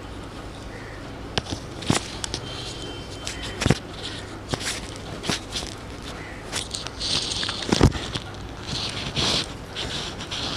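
Hands braiding long hair: soft rustles of the strands, with scattered small clicks and taps and two brief hissy rustles about seven and nine seconds in, over a steady low hum.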